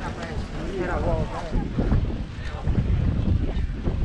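Wind buffeting the microphone, an uneven low rumble, with people's voices in the background during the first second or so.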